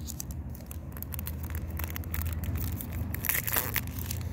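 Crinkling and tearing of a Magic: The Gathering booster pack's plastic foil wrapper as it is handled and ripped open, with a brighter, louder rip about three and a half seconds in, over a low steady rumble.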